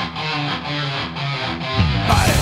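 Progressive thrash metal: the drums drop out and an electric guitar plays a short riff of separate notes on its own, with a sliding note leading the full band back in at the end.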